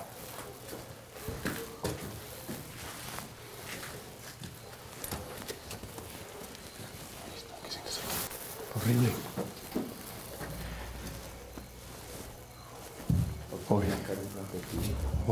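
Footsteps and scattered small knocks and rustles of people moving slowly through a narrow stone passage. Brief low voices come in about nine seconds in and again near the end.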